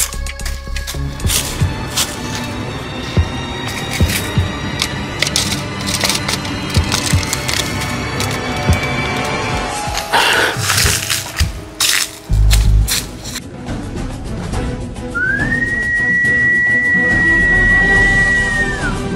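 Background music with scattered snapping and crackling like dry leaves and twigs underfoot. Near the end, one long whistle rises and holds at one pitch: the whistle of Cumade Fulozinha, the forest spirit of Northeastern Brazilian folklore, announcing her presence.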